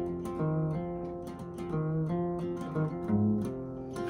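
Solo acoustic guitar with a capo, playing chords with a bass note that changes about once a second, without voice.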